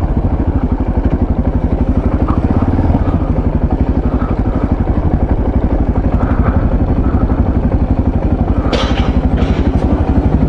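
Yamaha MT-03 660's single-cylinder engine running at low revs with an even, fast pulse as the bike rolls slowly into a forecourt. Two short clattering knocks near the end.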